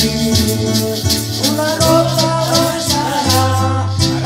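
Live worship song played on an electronic keyboard: sustained bass notes under a steady shaker beat, with a man singing over it.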